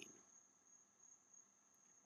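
Near silence: faint background hiss with a thin, steady high-pitched tone.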